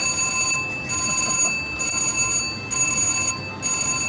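VGT Mr. Money Bags slot machine's jackpot alarm ringing steadily, a high ringing that breaks off briefly about once a second. It signals a hand-pay jackpot that locks the machine until an attendant comes to validate it.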